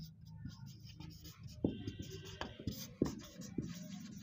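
Marker pen writing on a whiteboard: faint scratching strokes with a few short sharp taps as the letters are formed.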